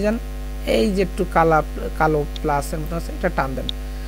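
Steady low electrical mains hum from the recording chain, with a voice speaking over it in short phrases.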